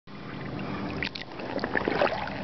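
Shallow water sloshing and lapping, with a few small splashes about a second in and again near the end.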